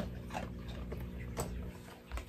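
Quiet sounds of a pet dog close to the microphone: a few faint clicks over a low steady hum.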